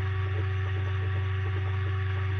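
Steady electrical hum, a low drone with a few fainter steady higher tones over light hiss, carried on the presenter's audio line.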